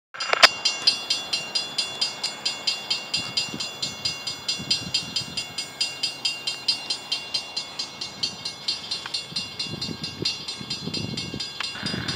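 Railroad grade-crossing warning bell ringing rapidly and evenly, about four strikes a second: the crossing signals are activated for an approaching train.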